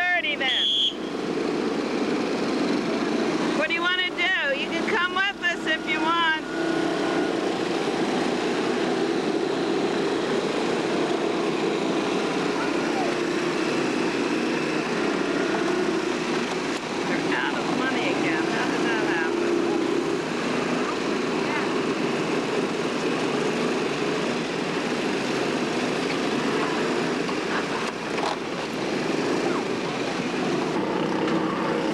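Steady low drone of a moving vehicle, with indistinct voices briefly about four to six seconds in.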